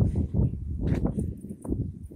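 Footsteps of a person walking up a steep concrete road, about one every half second, with breathing and a low rumble close to the phone's microphone.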